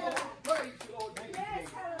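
Hands clapping in a quick, steady rhythm, about four claps a second, under faint voices calling out.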